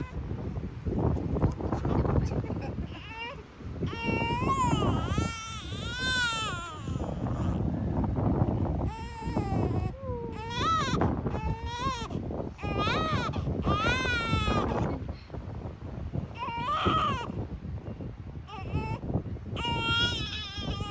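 Newborn baby crying while being wrapped in fabric: a run of wavering, high-pitched wails, starting a few seconds in and repeating on and off with short breaks.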